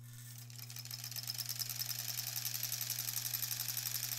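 Electric sewing machine stitching a seam through cotton quilt pieces: it starts just after the beginning, comes up to speed within about half a second, then runs at a fast, even rate of stitches.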